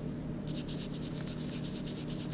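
A rapid, raspy pulse train of animal calls, about ten pulses a second, starting about half a second in, typical of a night-calling insect. A steady low hum runs underneath.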